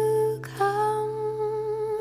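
Background song: a voice holds two long notes without words over a low, steady accompaniment, with a short break about half a second in.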